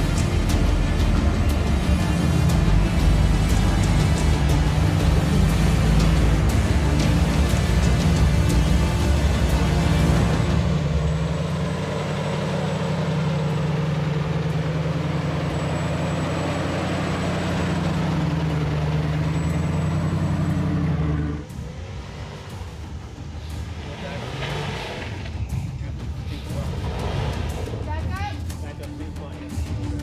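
Background music over the engine of a lifted Jeep Cherokee crawling up a rutted trail, the engine note rising and falling under load. About two-thirds of the way through, the loud engine sound drops away suddenly, leaving quieter music.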